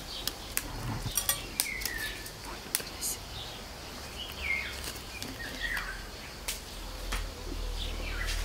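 Bird calls: a short whistle that slides down in pitch, repeated several times, with a few sharp clicks among them.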